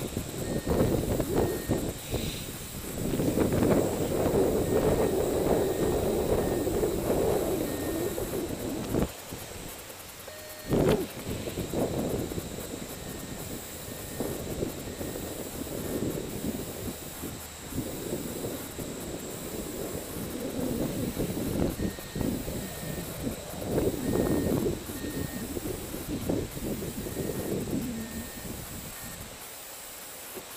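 Wind buffeting the camera microphone in irregular gusts that swell and fade, broken by a short lull with a sharp click about ten seconds in.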